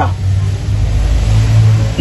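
A motor vehicle's engine, a low steady rumble that swells briefly shortly before the end.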